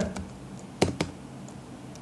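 Computer keyboard keystrokes: two sharp key clicks in quick succession about a second in, after a couple of fainter taps near the start.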